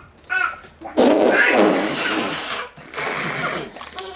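A man blowing raspberries against a baby's tummy: a long spluttering raspberry about a second in, then a shorter one near the end.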